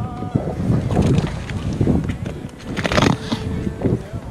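Wind buffeting the camera microphone as a gusty, low rumble, with brief fragments of voices.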